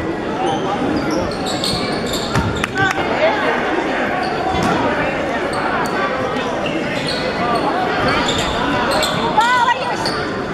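Basketball game in a gym: a basketball bouncing on the hardwood and sneakers squeaking on the court over steady crowd and bench chatter.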